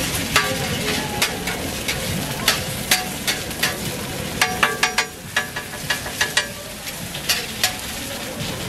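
Eggs and ham frying on a flat steel griddle with a steady sizzle, while a metal spatula clicks and scrapes against the griddle surface many times, with a quick cluster of ringing taps about four and a half seconds in.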